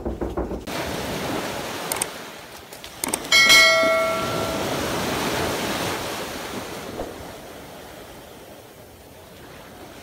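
Surf washing onto a beach, fading toward the end. About three seconds in, a short click and then a ringing bell ding from a subscribe-button animation. A few bumps from the camera being handled come at the very start.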